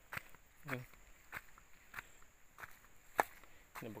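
Footsteps of one person walking on a rutted, stony mud track: short crunching steps a little more than half a second apart, one sharper step about three seconds in.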